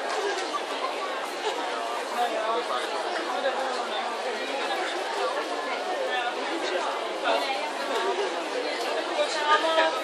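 Crowd of spectators chattering, many overlapping voices at an even level.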